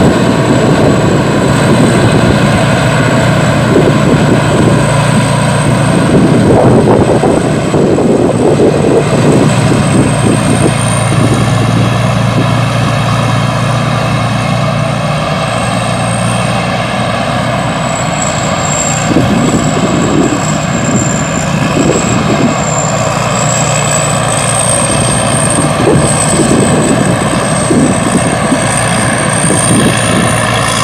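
Supakorn Hi-Tech rice combine harvester running steadily while cutting and threshing rice: a loud, continuous diesel engine and machinery drone, with a thin high whine above it that wavers slowly in pitch.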